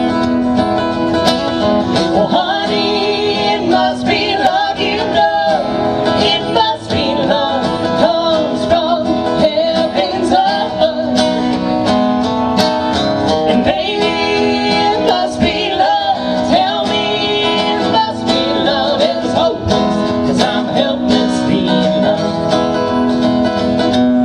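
Live country music: a strummed acoustic guitar with sung vocals.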